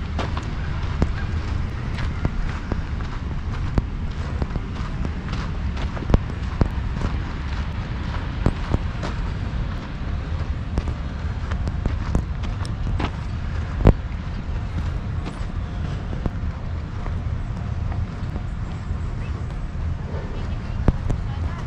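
Steady low rumble of wind on the microphone, with scattered light clicks and knocks at irregular times and one louder knock about 14 seconds in.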